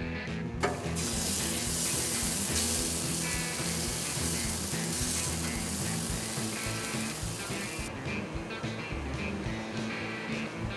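Pork ribs sizzling on a hot gas grill as barbecue sauce is brushed on: a dense hiss starts with a click about half a second in and stops near eight seconds. Guitar background music plays throughout.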